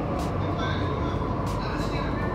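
Delhi Metro train running, heard from inside the carriage as a steady rumble.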